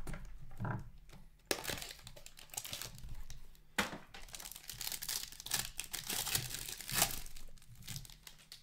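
A 2020-21 SP Game Used hockey card foil pack being handled and torn open: crinkling and tearing of the foil wrapper, with a few sharp cracks. The rustling is busiest in the second half.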